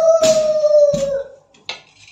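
A long, high-pitched wail held on one note and sliding slowly down in pitch, stopping about one and a half seconds in, with two sharp knocks during it.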